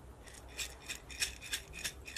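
Dry spiral pasta rattling inside a glass jar as it is shaken like a maraca, in quick strokes about three a second.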